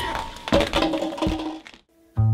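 Sneakers stepping on a tiled floor and kicking plastic party cups, a few sharp thunks and knocks, with a brief voice between them. The sound cuts off to silence near the end.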